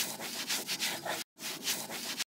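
Scrubbing sound effect: a quick back-and-forth rubbing of a scrubber on a floor, about four or five strokes a second, with a brief break a little past the middle.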